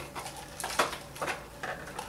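Plastic cup of iced coffee being picked up off a wooden table: a handful of short clicks and knocks of ice and plastic.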